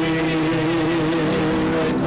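Worship band playing instrumental music: a saxophone holds a long, wavering note over sustained keyboard chords.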